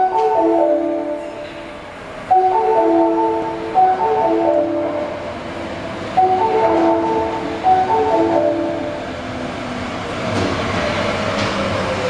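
Station train-approach melody: a short marimba-like tune over the platform speakers, heard about three times at roughly four-second intervals, signalling that a train is arriving. From about ten seconds in, a 30 series aluminium-bodied subway train's running noise rises as it enters the station, with a falling whine near the end as it slows.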